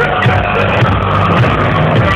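Loud live music from a DJ set with a pulsing bass beat, played over a concert PA and recorded from within the crowd, its sound dull and cut off in the highs.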